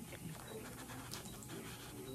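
Faint breathing through an open mouth and a few faint clicks as an orthodontic elastic is stretched onto the hooks of metal braces.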